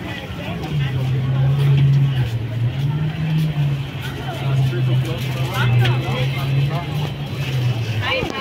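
Passers-by talking over a loud, low steady hum that shifts pitch in a few steps.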